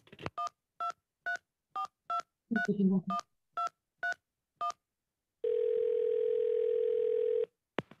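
Telephone call placed on a touch-tone phone: a string of short keypad beeps, about two a second, as the number is dialed, then one steady ringback tone of about two seconds as the line rings. A click comes near the end as the call is picked up.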